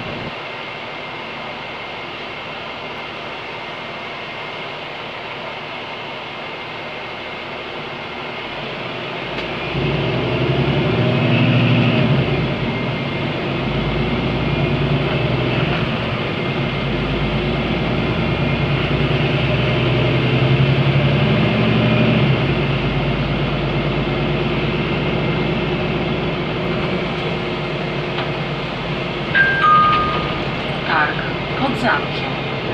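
Cabin noise inside a city bus with a Cummins ISB6.7 diesel and Voith automatic gearbox. The engine runs fairly quietly at first, then grows louder from about nine seconds in as the bus gets under way, its note rising and falling a few times. Near the end a two-note descending chime sounds.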